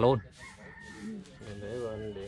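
A rooster crowing in the background: one long wavering call that starts a little past halfway through.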